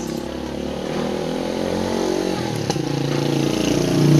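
A motor vehicle's engine running close by, growing steadily louder.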